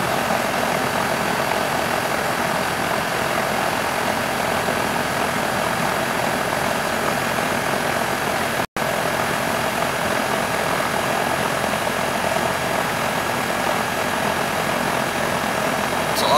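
York microchannel central air conditioner condensing unit running steadily, its condenser fan and compressor making an even whoosh and hum; the system is low on R-410A refrigerant. The sound drops out completely for a split second a little past halfway.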